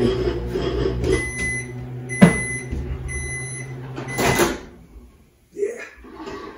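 Microwave oven beeping three times to signal that its heating cycle, melting butter, has finished, with a sharp click between the beeps. A short clatter follows near the end, over a low hum that fades out.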